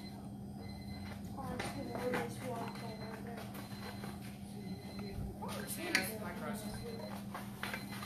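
Faint background talk from people in the room over a steady low hum, with one sharp tap about six seconds in.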